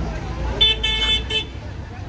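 Vehicle horn honking three times, a short toot, a longer one and another short toot, starting about half a second in.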